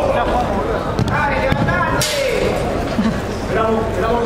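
Players' shouts and calls during an indoor five-a-side football game, with one sharp ball strike about two seconds in that rings on in the hall.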